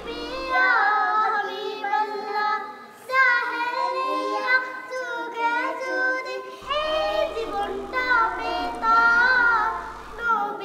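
Young girls singing a Bangla gojol, an Islamic devotional song, together in phrases with wavering, gliding melody lines and brief breaks between phrases.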